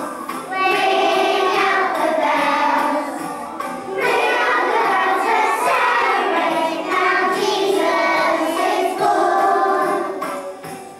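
A group of young children singing a song together, phrase by phrase, with brief dips between lines.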